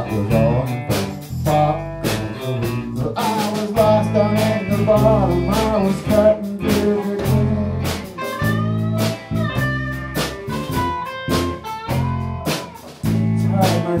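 Blues-rock band playing an instrumental break: an electric guitar lead with bent, gliding notes over bass guitar and a drum kit keeping a steady beat.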